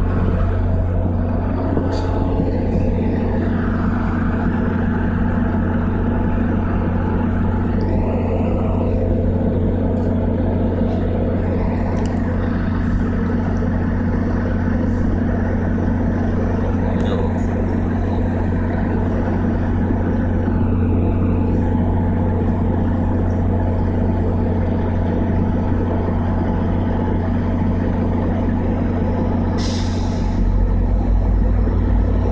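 MBTA commuter rail train's diesel idling while stopped at the platform: a steady low hum that holds one pitch and level throughout, with faint voices in the first several seconds.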